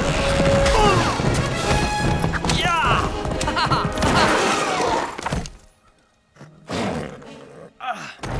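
Animated-film chase soundtrack: orchestral music mixed with impact effects and a vocal cry a little before three seconds in. The whole mix drops suddenly to near silence about five and a half seconds in, followed by a short, quieter sound.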